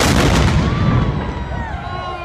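A single loud bang marks the start of a road race, its noise dying away over about a second, followed by voices whooping and cheering.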